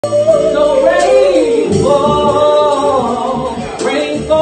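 A woman singing long held notes, in two long phrases with a short break about halfway through.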